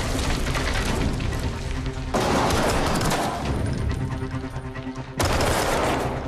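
Rapid bursts of automatic rifle fire over a film score, with two sudden loud hits, about two seconds in and about five seconds in.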